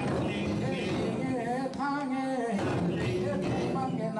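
Men's voices singing a Limbu song into a microphone, with long held notes that waver in pitch.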